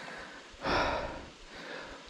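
A man's heavy breath out, one noisy exhale about half a second in: he is winded after a very steep climb.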